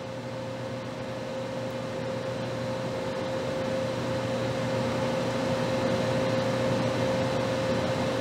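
Steady fan-type whirr and hiss with one constant mid-pitched whine, slowly getting louder.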